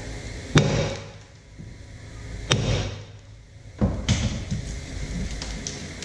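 Hammer blows on a rust-seized rear brake drum of a Honda Accord: three sharp strikes about a second and a half apart, the first the loudest, then a few lighter knocks near the end. The drum does not break loose.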